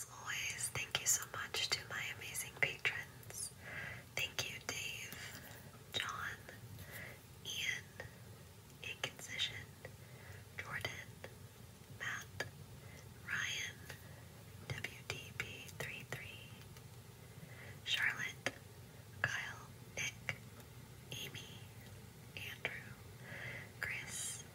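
A person whispering close to the microphone in short breathy bursts, with small mouth clicks between them.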